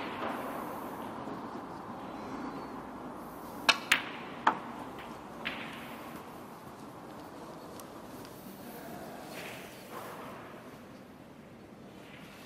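Snooker balls striking: a few sharp clicks about four seconds in as the cue tip hits the cue ball and the cue ball hits the blue, which is potted, with a lighter click about a second later. Low, steady room tone around them.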